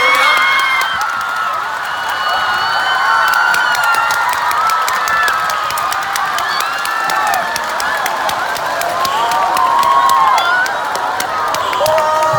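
Large theatre audience cheering, with many overlapping high-pitched shouts and scattered clapping, greeting the performers as they come on stage.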